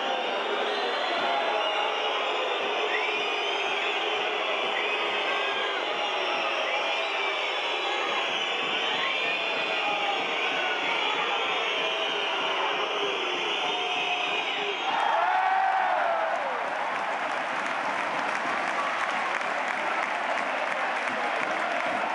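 Ice hockey arena crowd during a penalty shootout: a continuous din of voices with high calls rising and falling over it. About fifteen seconds in it swells into cheering and applause.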